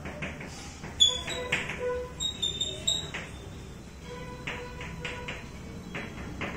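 Chalk writing on a blackboard: a run of sharp taps and scrapes as each letter is formed, the sharpest tap about a second in. Short high squeaks of the chalk come and go in the first half and again near the end.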